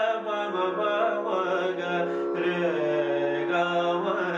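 Male voice singing slow, sustained notes of Raag Bhairav in Hindustani classical style, gliding between held pitches, over a steady harmonium.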